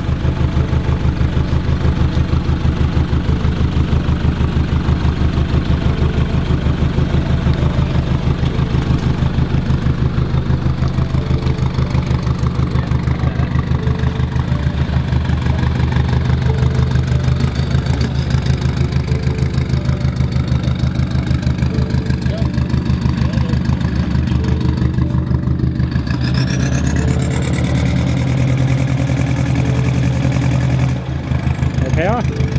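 Toyota Hilux engine idling with a steady, rhythmic exhaust pulse while it pours white smoke, a sign of a blown head gasket or a damaged piston, as the owners think. A thin rising whine joins in near the end.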